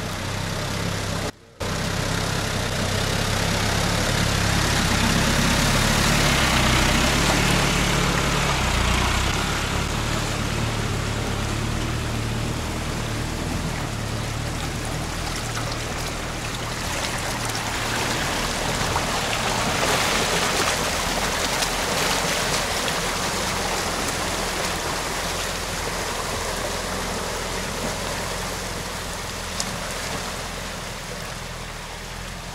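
Engines of a UAZ van and a Toyota RAV4 on a tow strap running slowly through deep floodwater, with water churning and rushing around the wheels and bodywork. The low engine hum is strongest in the first ten seconds. The sound breaks off briefly about a second and a half in.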